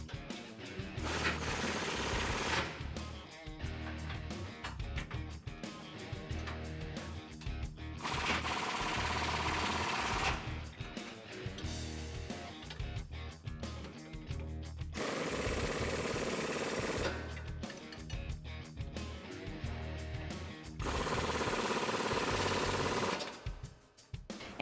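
Pneumatic impact wrench hammering on the rear trailing arm bolts, in four bursts of about two to three seconds each, running the bolts down tight.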